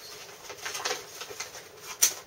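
Soft rustling and crinkling of a cardboard toy box and a folded paper pamphlet being handled, in a few short scrapes.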